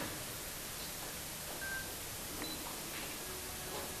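Quiet room tone with steady hiss, broken by a few faint clicks and two brief high beeps.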